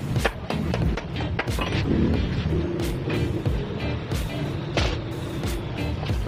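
Background music over irregular knocks and clatter of wooden pallet boards being handled and scraped on a concrete floor.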